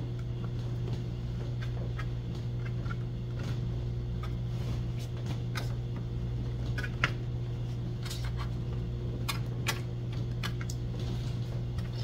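A fork's tines pricking rounds of puff pastry on a parchment-lined baking tray, making scattered light taps and clicks, over a steady low hum.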